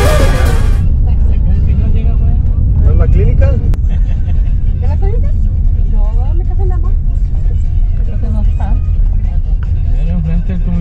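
Brass-band music cuts off about a second in. After it comes the loud, steady low rumble of a car driving slowly over a rough stone-paved and dirt road, heard from inside the cabin, with faint voices in the background.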